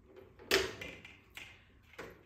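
ABS plastic armor shoulder piece being handled: a sharp plastic click about half a second in, then two lighter taps.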